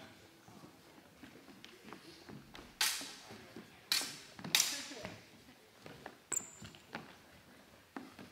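Steel training longswords clashing: three sharp blade strikes in under two seconds, about three seconds in, then a short high ring of metal a little later.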